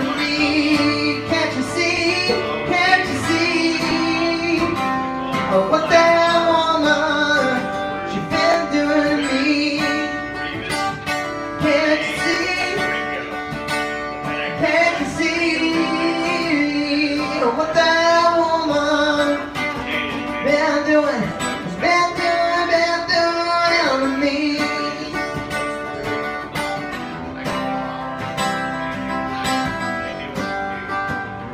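A man singing live to his own strummed acoustic guitar, the voice drawn out in long, wavering notes over the guitar.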